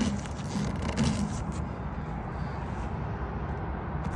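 Steady low rumble of a motor vehicle running nearby, with faint metal scraping and handling noises in the first second and a half as a threaded pipe is twisted by hand into a fitting.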